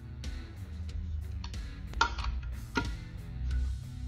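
Background music with guitar, and a few sharp handling clicks; the loudest click comes about two seconds in.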